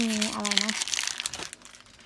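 Crinkling, rustling handling noise that dies away after about a second and a half, under a woman's short spoken question.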